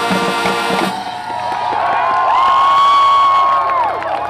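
A marching band's brass and drums hold a final chord that cuts off just before a second in. Onlookers then cheer and whoop, and one long high-pitched call is loudest in the second half.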